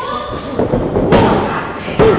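Wrestlers' bodies hitting the ring canvas in a takedown from a side headlock, with a loud thud about a second in.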